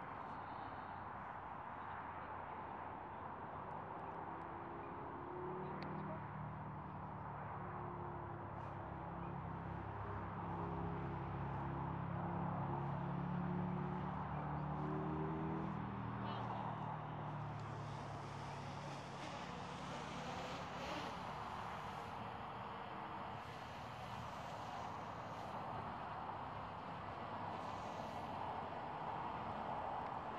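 Steady outdoor road-traffic noise. A low engine hum swells from about five seconds in, is loudest a little before the middle, and fades out by about seventeen seconds, with a brighter hiss after that.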